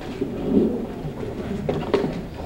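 Indistinct murmur of many people talking and moving about in a room, swelling about half a second in, with a sharp knock near the end.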